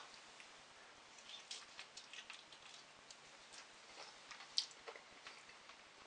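Faint chewing and soft mouth clicks from someone eating a sauced chicken wing, scattered through near quiet, with one slightly louder click past the middle.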